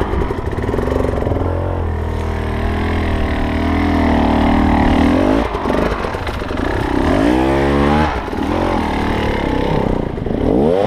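Off-road motorcycle engine running close by, held at fairly steady revs for a few seconds, then dropping and revved up sharply about seven seconds in, with further rises and falls near the end.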